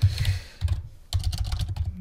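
Typing on a computer keyboard: an irregular run of keystrokes.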